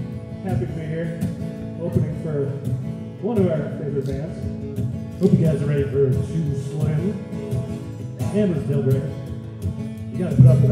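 Live acoustic guitar and mandolin playing a rhythmic, steadily strummed song, with a man's voice singing phrases over them.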